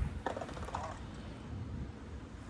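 BMX bike's rear hub ratcheting with a short run of light clicks as the bike is rolled, about half a second in.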